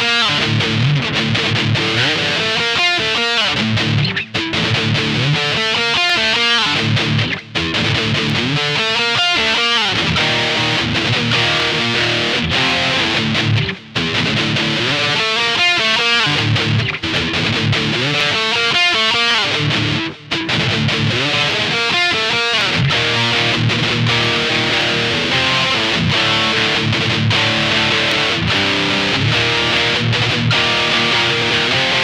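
Fender Stratocaster electric guitar playing a riff: repeating runs of fast picked notes, broken by four very short pauses.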